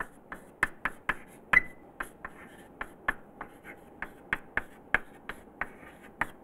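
Chalk writing on a blackboard: a quick, uneven string of sharp taps and short scratches, about three a second, as symbols are written.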